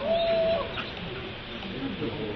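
A single animal call near the start: it rises briefly, then holds one pitch for about half a second.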